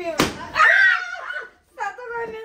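A single sharp smack, then a woman's loud high-pitched excited shout and a short call near the end.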